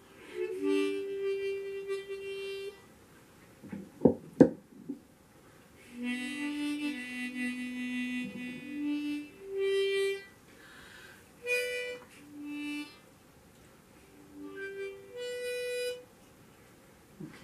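Diatonic harmonica in a neck holder playing short, tentative phrases of held notes and two-note chords, with pauses between them. Two sharp knocks about four seconds in.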